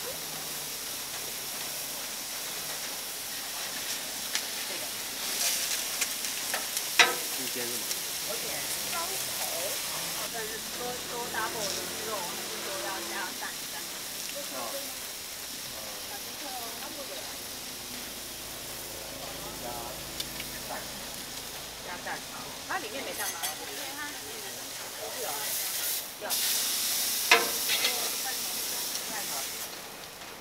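Beef patty, cheese and buns sizzling on a stainless-steel flat-top griddle, a steady frying hiss. Two sharp clicks cut in, about seven seconds in and near the end, and the sizzling grows louder over the last few seconds.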